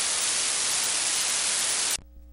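Loud steady static hiss from the meeting recording's audio feed. It cuts off suddenly just before the end, leaving only a faint electrical mains hum.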